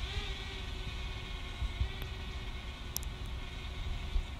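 Small camera drone's propellers humming steadily as it climbs overhead: a faint whine of several steady tones over a low rumble, dipping briefly in pitch at the start.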